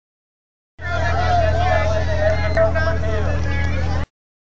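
People's voices and chatter, with a steady low hum underneath; the sound starts just under a second in and cuts off abruptly at the end.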